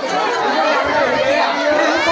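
A crowd of many voices chattering and shouting over one another.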